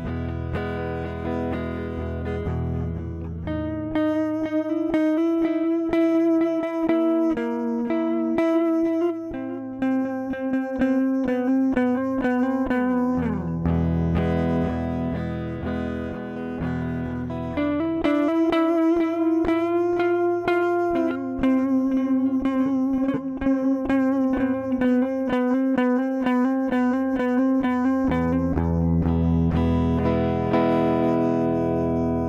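Heritage H-150 electric guitar played through a Reaktor Blocks software effects chain with the tape delay echo on: sustained notes and chords with a few string bends.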